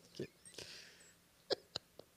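A mostly quiet pause, with a short faint vocal sound just after the start, then two sharp clicks about a quarter second apart.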